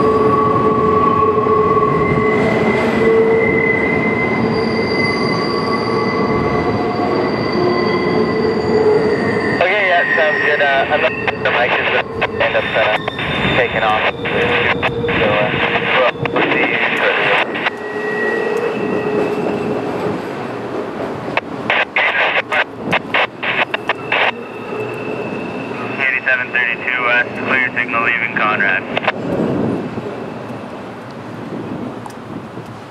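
Freight cars of a double-stack intermodal train rolling across a steel trestle with wheel squeal. Steady high squeal tones ride over the rumble at first; from about a third of the way in, louder, wavering screeches come and go. The level drops near the end as the last cars pass.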